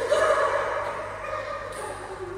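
High-pitched young women's voices with a wavering pitch, loudest in the first half second and then fading.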